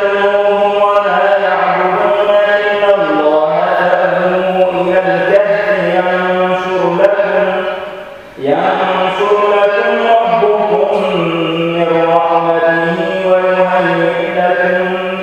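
A man reciting the Qur'an in Arabic in a slow, melodic chant, holding long notes. He breaks off for a breath about eight seconds in and starts a new phrase.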